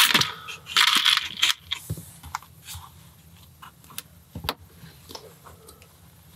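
Small plastic LEGO pieces clattering as a hand rummages through a tray of loose parts for about a second and a half, then a few scattered light clicks of pieces being handled, with one sharper click about four and a half seconds in.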